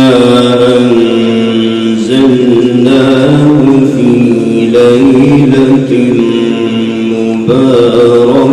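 A man reciting the Quran in a melodic, chanted style (tilawat), holding long sustained notes that waver and step in pitch. A new phrase begins near the end.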